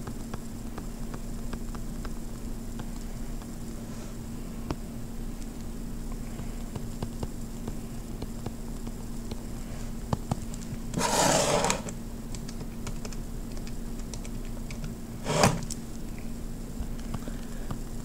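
Light tapping and scratching of a stylus on a tablet screen while handwriting, over a steady low hum. About eleven seconds in a louder rush of noise lasts about a second, and a shorter one follows a few seconds later.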